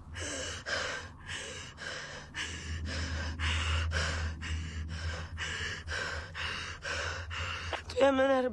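A woman breathing hard in quick, ragged gasps, about two breaths a second, over a steady low hum.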